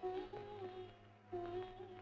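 Faint background music: one soft melodic line holds two long notes with a slight waver, breaking off briefly about a second in.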